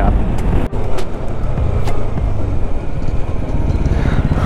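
Bajaj Dominar 400's single-cylinder engine running under way, mixed with wind rush on the microphone, with a brief sharp drop in the sound under a second in.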